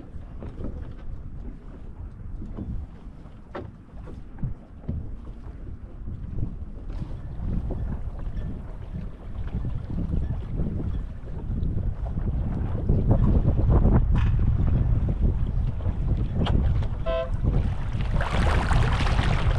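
Wind buffeting the microphone over open water, a low rumble that grows stronger in the second half, with scattered small knocks and splashes. A short pitched tone sounds near the end.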